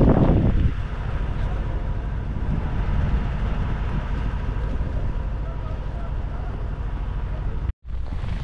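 Wind buffeting the microphone outdoors: a steady low rumble with no pitch, dropping out for a moment near the end.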